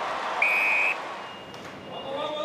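Stadium crowd noise with a short, high, steady buzzer tone lasting about half a second, a little under half a second in; the crowd noise then fades away.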